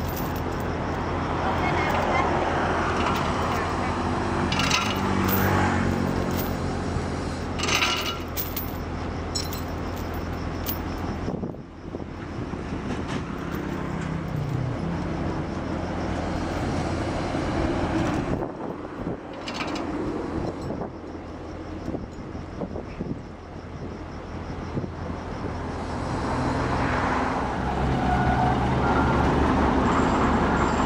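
Excavator's diesel engine running steadily, with road traffic passing and swelling, then fading, and a couple of sharp clinks in the first several seconds.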